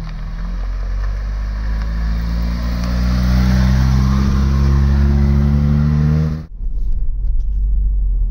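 Vauxhall Astra GTE 16v's 16-valve four-cylinder engine pulling away, its pitch rising slowly as the car gathers speed. About six and a half seconds in the sound cuts to the steadier engine and road noise heard inside the cabin.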